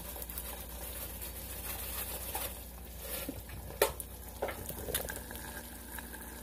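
An egg frying in butter in a nonstick pan, a quiet steady sizzle and crackle, with a few sharp clicks about halfway through.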